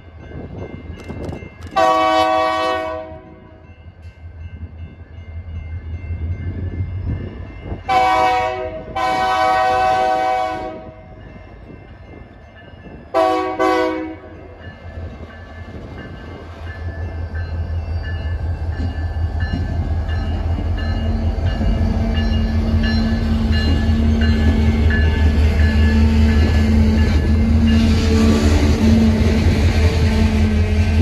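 A BNSF diesel locomotive's horn sounds for a grade crossing: a long blast about two seconds in, a short and a long blast close together a few seconds later, and a short blast near the middle, over the low rumble of the engine. After the locomotive passes, the rumble and rolling of the tank cars' wheels on the rails grows steadily louder.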